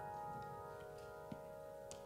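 A held piano chord on an electric stage keyboard, slowly fading away, with a faint click about a second and a half in.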